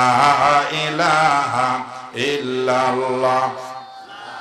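A man's voice chanting into a microphone in a melodic, sing-song preaching style, in two long held phrases with a wavering pitch. The second phrase ends shortly before the end.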